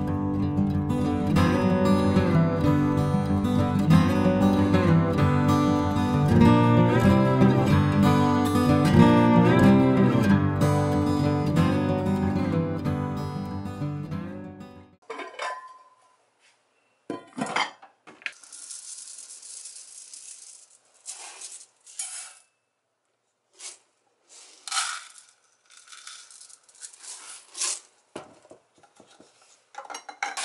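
Background music with guitar for about the first fifteen seconds, then it stops. After that come short clattering handling sounds at a stainless steel sink: a rice cooker's inner pot handled and dry rice poured from a glass jar into it in a few brief rattling runs.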